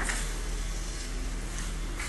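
Steady low hum under a faint hiss, with a brief rustle at the very start, typical of a handheld camera being moved through a quiet empty room.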